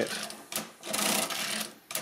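Mercedes-Euklid Model 29 mechanical calculator being worked by its hand crank: a sharp click, then about a second of whirring and clattering from its gears and toothed racks, and another click near the end.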